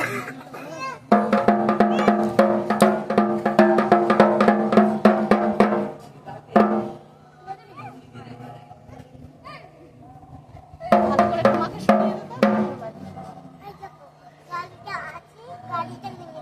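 A dhak, the large Bengali barrel drum, beaten with two thin sticks. A fast run of strokes lasts about five seconds, followed by a single stroke and a pause, and then a second fast run of under two seconds.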